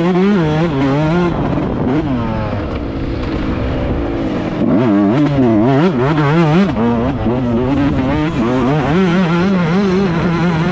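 Yamaha YZ125 single-cylinder two-stroke motocross engine revving hard under racing load, its pitch climbing and dropping again and again as the throttle is worked over the rough track. It eases off about two seconds in and winds up hard again from about halfway.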